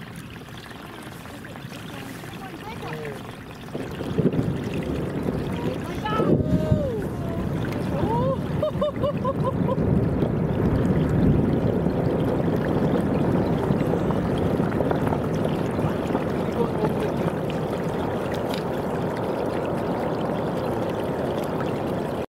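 Glacier ice front calving: a steady rushing noise of ice collapsing and crashing into the water swells up about four seconds in and keeps on without a break.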